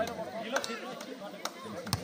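Volleyball struck by hand during a rally, with a sharp slap near the end, over the voices of a crowd of spectators.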